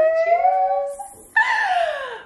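A woman's voice drawing out a toast of 'cheers' as one long, slightly rising held note, then a high voice sliding sharply down in a squeal-like laugh.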